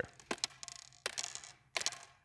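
Juggling clubs clacking against each other as one is tossed and caught and the rest are handled in the hand: a few short, sharp clacks.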